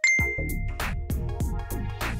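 A bright quiz-show ding chime, one high tone that rings for about half a second, marking the answer reveal. It plays over electronic background music with a steady drum-machine beat.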